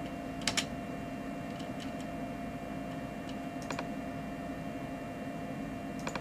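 A handful of short, scattered computer clicks, two close together about half a second in, as a menu setting is changed in software, over a steady electrical hum.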